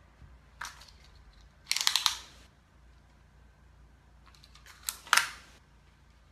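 Short bursts of handling noise, quick clicks and rustles, as hands smooth and reposition a wet crochet sweater on a towel; they come about half a second in, around two seconds in, and the loudest near five seconds.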